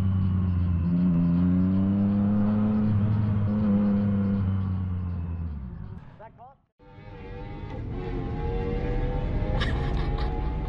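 Yamaha motorcycle engine running at low road speed with a steady note, winding down and dying away about six seconds in. After a brief break a different sound with faint music follows.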